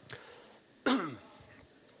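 A man gives a single short cough, clearing his throat, into a handheld microphone about a second in.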